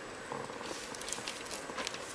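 Steady room hiss with a scatter of short, light clicks and taps in the second half.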